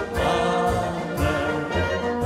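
Czech brass band (dechovka) playing an instrumental passage, brass carrying the melody over a tuba bass line.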